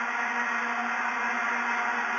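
Stadium crowd noise with the steady drone of massed vuvuzelas, heard over a television match broadcast.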